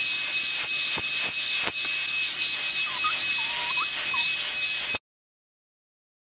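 Hot-air brush dryer running, a steady blowing hiss with a high whine, as it is worked through long hair. The sound cuts off abruptly about five seconds in.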